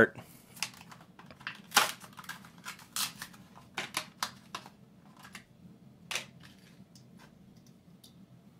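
Hot Wheels blister pack being opened by hand: the clear plastic blister is pried and peeled off its card backing in a string of sharp crinkles and crackles, the loudest about two, three and six seconds in.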